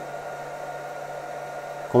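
Steady fan whir with a faint low hum from two portable laser engravers, an xTool F1 and a LaserPecker 4, running an engraving job at the same time.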